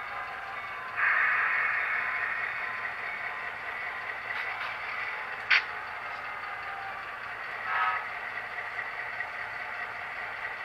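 Model train cars rolling along layout track with a steady whirring rush of wheels on rail. It suddenly gets louder about a second in and fades over the next few seconds, with a sharp click about halfway and a brief swell near the end.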